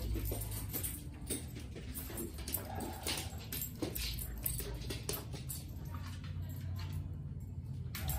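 A dog whimpering softly over a steady low hum.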